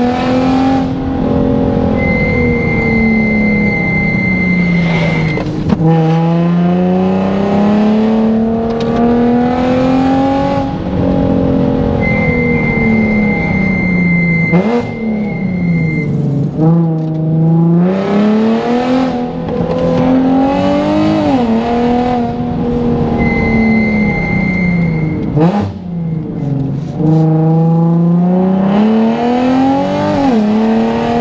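2009 Nissan 370Z's VQ37 V6 with a full aftermarket exhaust, heard from inside the cabin while driven hard: the engine note climbs and drops again and again through gear changes, with several quick sharp rev blips. A steady high tone is held for a few seconds three times along the way.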